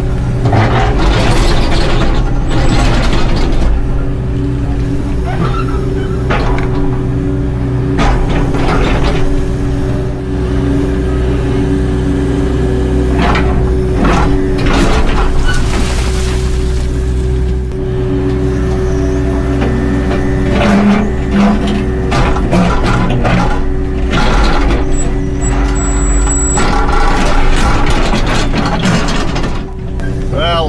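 Excavator's diesel engine running steadily under load, heard from the cab, while the bucket scrapes into the bank and rock and dirt crash down in several bursts.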